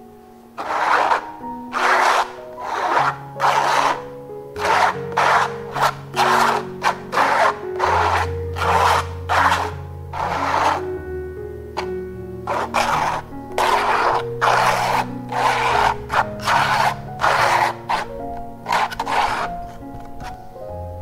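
Metal palette knife scraping thick acrylic paint across a stretched canvas in short, repeated strokes, roughly one a second and louder than the music. Soft background music with held notes runs underneath.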